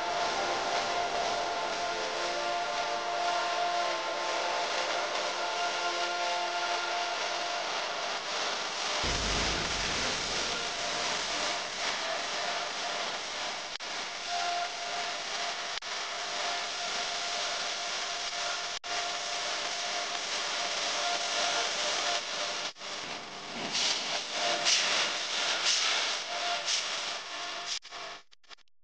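Prestige Deluxe aluminium pressure cooker hissing steadily as steam escapes under its weight, with faint whistling tones in the first part. There is a low thump about nine seconds in, and the hissing turns louder and uneven near the end.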